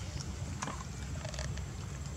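Macaques making a couple of faint short squeaks, about half a second in and again near the end, over a steady low rumble.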